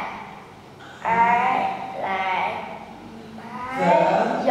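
Speech only: a child reading a story aloud haltingly, in short unclear phrases with pauses.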